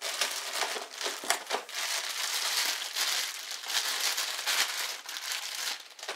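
Crumpled brown packing paper and plastic bubble wrap crinkling and rustling as hands dig an item out of a shipping box and pull it free. The crinkling starts abruptly, goes on continuously with many small crackles, and dies away near the end.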